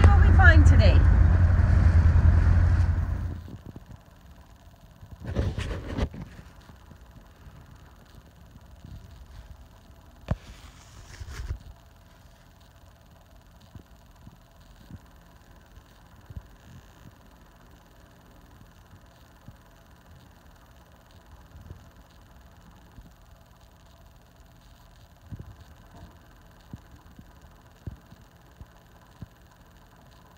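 A motorboat's engines running underway, a steady low rumble heard from inside the cabin, which cuts off about three and a half seconds in. After that only a faint background remains, with two brief bursts of noise and scattered faint clicks.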